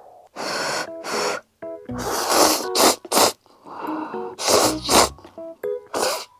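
A person slurping instant cup noodles: about six loud slurps, mostly in pairs, with faint keyboard background music under them.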